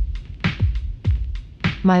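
Electronic drum-machine beat: a deep kick drum falling in pitch on each hit, about two to three a second, with short hi-hat ticks between. A voice starts over it at the very end.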